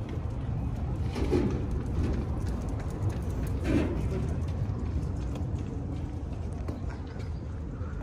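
Street sound on a cobblestone lane: walking footsteps and a couple of brief faint voices of passers-by, about one and four seconds in, over a steady low rumble.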